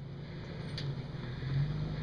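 Toyota FJ Cruiser's V6 engine running at low speed as the SUV crawls over a rocky dirt trail toward the listener, a low steady hum that grows slowly louder, with one sharp click about a second in.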